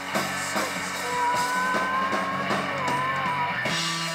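A live rock band playing, with electric guitar and a drum kit keeping a steady beat. Through the middle a single long note is held for about two and a half seconds, wavering slightly in pitch.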